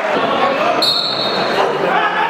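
Spectators talking in the stands of an indoor arena, with the hall's echo. About a second in, a single high whistle blast lasts under a second.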